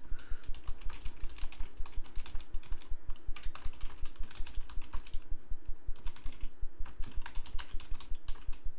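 Typing on a computer keyboard: a rapid, fairly even run of keystrokes as a sentence is typed out.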